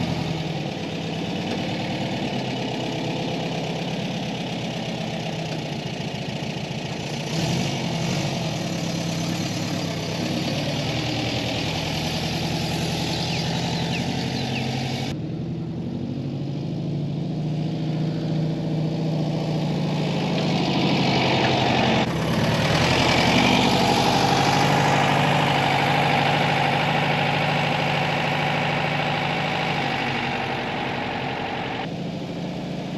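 The air-cooled flat-four engine of a 1978 VW Westfalia bus idling steadily. The sound changes abruptly about halfway through and again a few seconds later, and is a little louder after that.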